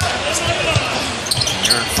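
A basketball being dribbled on a hardwood court: a run of low bounces, with voices in the background.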